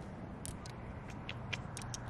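Small glass stones clicking against each other in a hand as they are picked up from shallow water over sand: about half a dozen light, sharp clicks over a faint steady background hiss.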